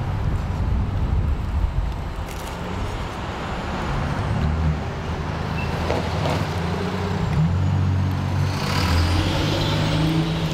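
Street traffic: the low rumble of passing motor vehicles, including a heavier truck-like engine, swelling from about four seconds in, with a louder rush of hiss near the end.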